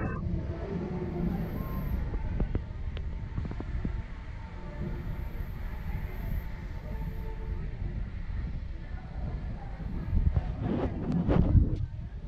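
Wind buffeting a camera microphone on a circling fairground ride: a steady low rumble that grows louder and rougher near the end.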